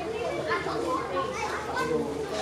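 Children's voices talking and calling out over one another in a continuous babble.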